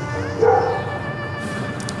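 Background drama score with sustained held tones, and a brief louder sound about half a second in.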